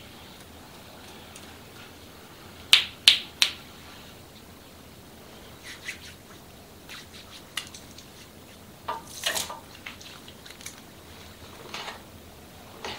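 Hands working on wet hair at a shampoo basin, with soft, scattered wet handling sounds. About three seconds in come three sharp snaps from the hands near the head, quickly one after another, the loudest sounds here.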